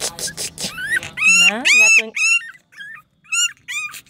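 Yorkshire terrier puppy whimpering in a series of short, high-pitched whines while its muzzle is held open to show its teeth, protesting the handling.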